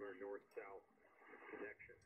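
Faint voice of a station on the air, received by a Yaesu FTDX10 HF transceiver and played through its internal speaker with the bass gain turned up. It sounds thin, with no treble.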